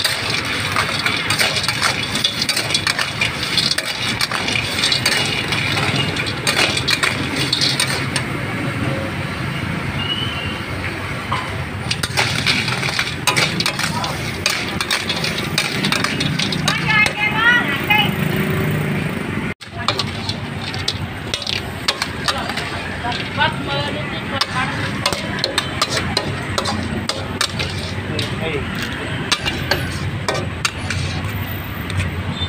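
Busy clatter of many small clicks and knocks with voices in the background. The sound briefly drops out about two-thirds of the way through, then carries on.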